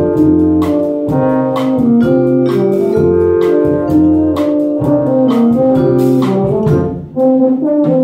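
A brass band playing: trumpets, horns and low brass on sustained chords with regular sharp attacks marking the beat. The music breaks off briefly about seven seconds in, then comes back in.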